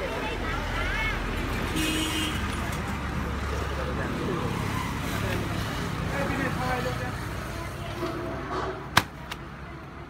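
People talking in the background, with a low rumble in the first few seconds and a single sharp knock about nine seconds in.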